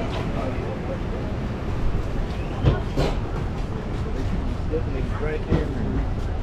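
Steady low rumble of outdoor background noise, with faint snatches of people's voices about halfway through and near the end.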